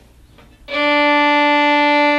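A violin bowed on one long, steady note that starts about two-thirds of a second in, drawn as an up bow toward the frog in the lower half of the bow.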